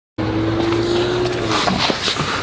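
A steady mechanical hum, like an engine or motor running, with one held tone that stops about one and a half seconds in, over a constant background noise.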